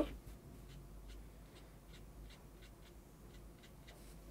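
Small round watercolour brush flicking short strokes onto cold-pressed watercolour paper: a faint run of brief brushing sounds, a few each second.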